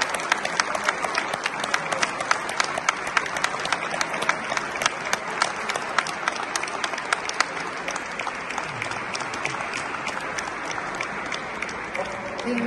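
An audience applauding, with a few sharp claps close by standing out, about four a second. The applause keeps going until it dies away near the end.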